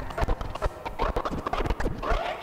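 Record scratching on a portable turntable: quick back-and-forth cuts of a sample, each a short pitch sweep, over low drum hits from a backing beat.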